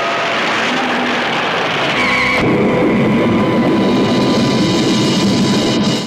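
A film trailer soundtrack: music mixed with a dense, noisy wash of sound effects. It grows fuller and louder about two seconds in, then cuts off abruptly at the end.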